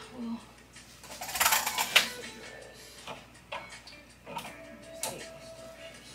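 Background music with a vocal line, over clothes hangers being handled on a closet rod: a loud rustling scrape about a second and a half in, then several short clicks of hangers against the rod.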